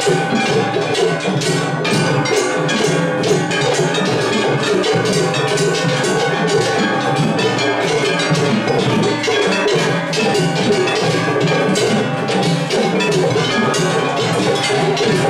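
Matsuri-bayashi from several festival floats playing at once in a drumming clash: taiko drums beating steadily under the fast, continuous clanging of surigane hand gongs.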